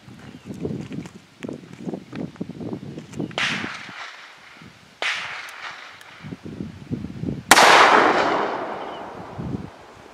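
Two .357 Magnum shots from a Ruger GP100 revolver, about two and a half seconds apart, the second the louder. Each rings off with a long echo.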